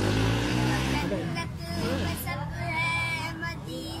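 A boy singing an Urdu naat, a devotional song, in a drawn-out, melodic voice, with a long held, wavering note about three seconds in.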